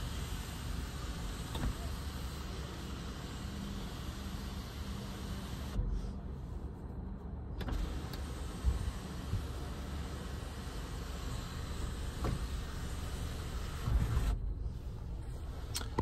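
Electric moonroof motor running in a 2018 Subaru Forester's cabin, over a steady low hum.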